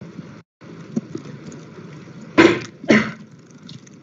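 A person coughing twice, about half a second apart, over an open voice-chat microphone with steady background hiss.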